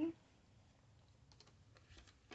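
Faint light clicks and rustles of paper banknotes being handled and slid into a clear plastic cash envelope, with a few small ticks about a second and a half in.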